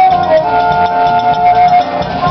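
Live jazz band playing, with a flute carrying the melody in long held notes over upright bass and hand drums.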